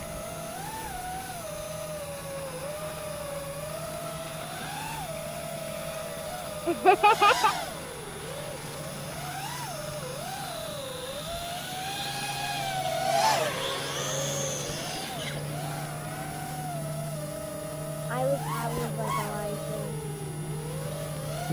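Whine of the small electric motors and propellers of an FPV quadcopter and a radio-controlled plane in flight, its pitch wandering up and down with throttle. A person laughs about seven seconds in.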